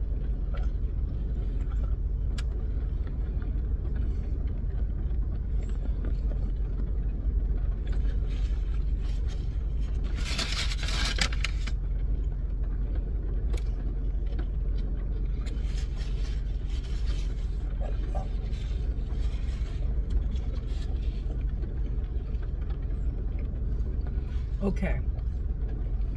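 Steady low rumble inside a car cabin while two people chew sandwiches, with a brief rustle of a paper sandwich wrapper about ten seconds in.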